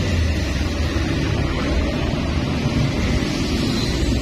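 Steady low rumble of road traffic with an even wash of noise, unchanging throughout.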